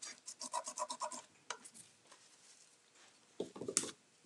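Hands rubbing and scratching a paper-backed paint inlay strip as it is handled and laid onto a painted wooden chest: a quick run of short scratchy strokes in the first second, then a few more near the end.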